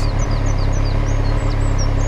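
2020 Triumph Street Triple 765 RS's 765 cc three-cylinder engine idling steadily in neutral. A bird sings over it in a run of short, quick chirps.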